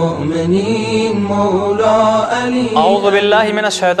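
A voice chanting a devotional melody in long held notes that slide up and down over a steady low drone, moving more quickly near the end.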